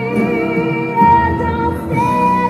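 Musical-theatre orchestra playing, with a female singer holding a long high note; the loudest point comes about a second in.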